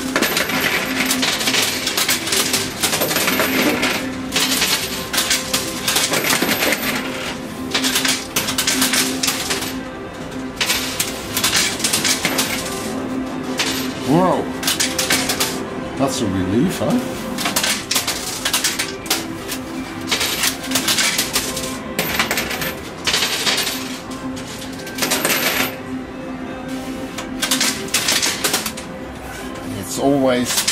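Euro coins clattering and clinking inside a coin pusher arcade machine: a dense, uneven run of metallic clicks as coins drop onto the sliding pusher bed and jostle against the coins already there, over a steady low hum.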